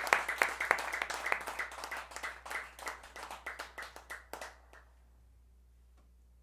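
Applause: a small group clapping, with the separate claps thinning and fading until they die away about four and a half seconds in.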